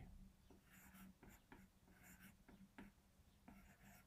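Faint taps and short scratchy strokes of a stylus writing by hand on a tablet's glass screen, over a faint low hum.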